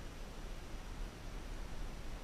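Faint steady hiss with an uneven low rumble underneath, with no distinct splashes or knocks.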